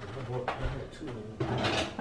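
Handling noise on a kitchen counter: a light knock about half a second in, then a brief rustle as a hand handles a plastic food bag.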